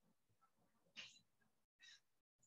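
Near silence on a video-call line, with a faint brief sound about a second in and another near the end.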